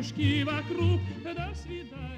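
Background music: a singer in operatic style, the voice wavering with strong vibrato over a low accompaniment.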